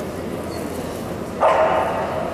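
A dog barks once, loud and sudden, about one and a half seconds in, over the steady background noise of a busy hall.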